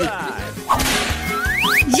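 Comic sound effects: a sudden whoosh about two-thirds of a second in, then two quick rising whistle-like glides near the end.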